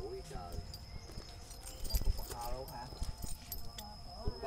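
People talking briefly in the background, with scattered light knocks and clicks, the loudest about two seconds in. A thin steady high-pitched tone runs underneath.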